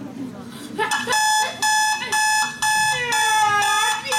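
An electronic alarm beeping, about two steady-pitched beeps a second, starting about a second in. Near the end a voice cries out over it.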